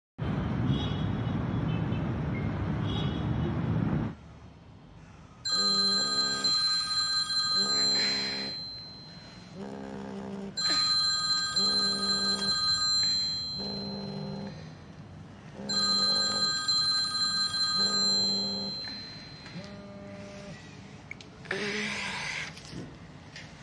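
A smartphone ringing on a wooden table: a high electronic ringtone sounds in three bursts about five seconds apart, while the phone buzzes in short vibrate pulses against the wood. A steady low rumble fills the first four seconds before the ringing starts.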